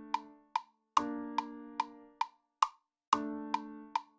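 GarageBand's metronome clicking steadily at about two and a half clicks a second, a drill-tempo count. Over it, chords on the GarageBand touch keyboard are struck about a second in and again near three seconds in, each ringing on and fading under sustain.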